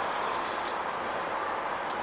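Steady background noise of the room: an even, constant hiss with no distinct sound event.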